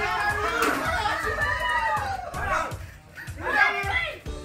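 Several people shrieking and shouting excitedly over each other, with one long scream sliding down in pitch and a loud burst of shouting near the end, over background music.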